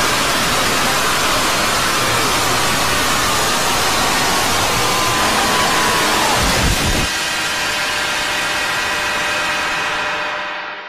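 Heavily distorted, effect-processed logo soundtrack: loud hiss with faint warbling pitch glides, then a low rumble that cuts off suddenly about seven seconds in, leaving a held ringing chord of steady tones over quieter hiss.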